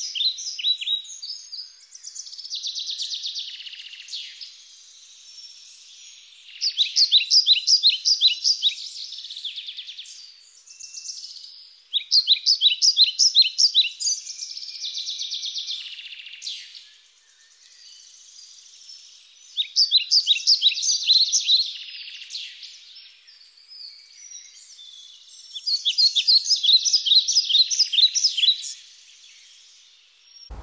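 A songbird singing, with loud phrases of rapid, sharp repeated notes about every six seconds and softer twittering in between.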